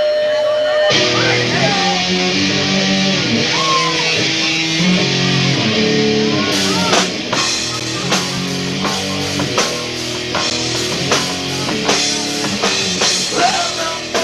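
Live rock band starting a song: electric guitars and bass come in about a second in with long held chords, and the drum kit joins about six and a half seconds in with steady hard hits.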